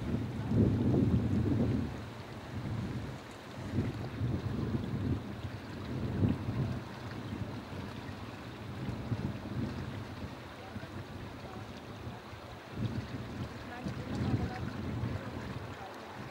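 Wind buffeting the microphone in irregular low gusts, the strongest in the first two seconds, with further swells later on.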